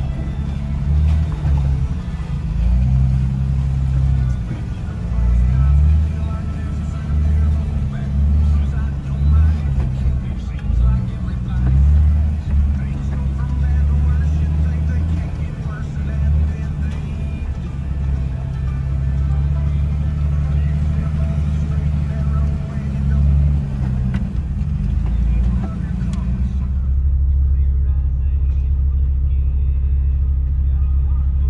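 Jeep TJ engine running under load on a rocky trail, heard inside the cab, its revs rising and falling as the Jeep crawls. About 27 seconds in the sound changes to a duller, steadier low rumble with the treble gone.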